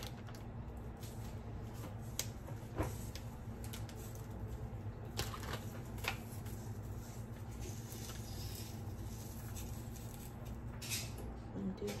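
A few light clicks and taps as a wooden stick prods and turns sausages on the hot plate of an electric contact grill, over a steady low hum.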